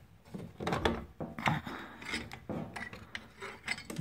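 Metal socket on a long extension bar scraping and clicking against the metal underside of a salt spreader as it is worked up into place, in a series of short, irregular strokes.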